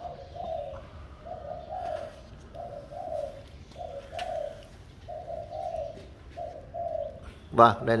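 A dove cooing over and over in evenly spaced pairs of low coos, about one pair every second and a quarter.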